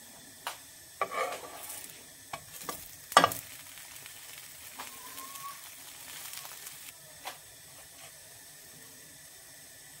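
Burger bun halves toasting in a hot frying pan with a faint sizzle, and a metal turner clicking and clattering against the pan as the buns are flipped, the loudest clack about three seconds in.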